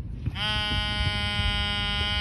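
Metal-detecting pinpointer giving a steady electronic buzz, which comes on about half a second in with a short upward slide and then holds. The buzz signals metal in the freshly dug hole.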